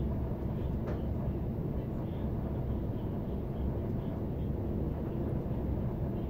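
Steady low rumble inside a train carriage as the train runs.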